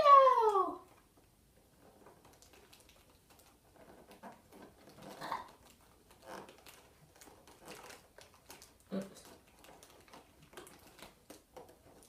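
A drawn-out high call, falling in pitch, cuts off under a second in. Then come faint scattered clicks and rustles as the cardboard door of a Tsum Tsum advent calendar is worked open and small plastic figures are handled.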